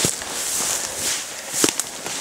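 Footsteps and rustling through forest undergrowth, with two sharp clicks, the louder one near the end.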